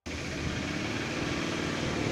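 Steady outdoor background noise with a low rumble, with no speech in it.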